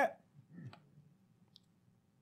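A man's speech ends, then a pause with a faint breath and a couple of small mouth clicks picked up close on a lapel microphone.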